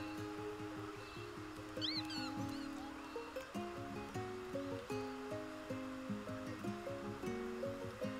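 Background music: a plucked-string tune with notes picked out one after another. A brief high chirp sounds about two seconds in.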